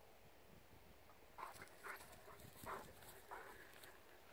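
Faint, short sounds from a Newfoundland dog, several in a row starting about a second and a half in.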